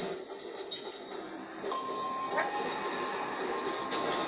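Faint audio from a smartphone's small speaker as a video starts to play, with a steady high tone from a little under two seconds in over a low hiss.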